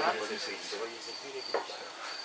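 Cricket chirping: a thin, high trill in short repeated runs. Faint soft laughter trails off in the first second, and there is a single soft click about one and a half seconds in.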